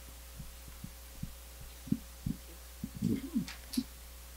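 Irregular low thumps and knocks of a handheld microphone being carried and handled as it is passed to an audience member, growing louder and more frequent in the last second or so, over a steady low hum.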